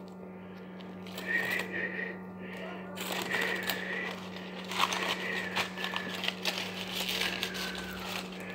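Aluminium foil being peeled off a chilled chocolate cake by hand, crinkling and tearing in irregular bursts that grow busier from about three seconds in. A steady low hum runs underneath.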